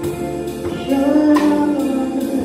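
A live worship band playing: a woman sings a held, sliding melody line over electric guitar and drums, with several sharp drum and cymbal hits.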